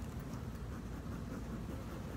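Steady low outdoor background rumble with a faint hiss and no distinct events.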